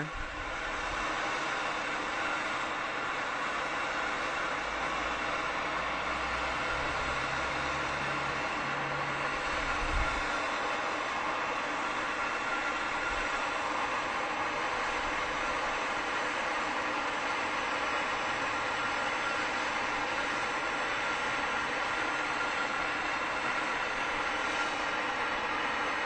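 MAPP gas hand torch burning with a steady hiss as its flame is worked around a hard drive platter, with a low rumble for a few seconds partway through.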